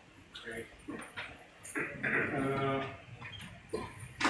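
A person's voice, quiet and indistinct: a few short murmured syllables and one drawn-out vocal sound in the middle, lasting about a second.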